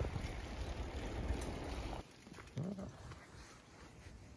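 Wind noise buffeting the microphone, which stops abruptly about halfway through; then a quieter outdoor background with one brief rising vocal sound.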